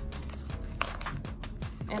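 Metal keys clicking and clinking as they are worked onto a key ring, over background music.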